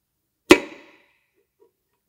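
A single sharp metallic knock about half a second in, with a short ringing tail, as the last piston and connecting rod assembly is worked out of the engine block.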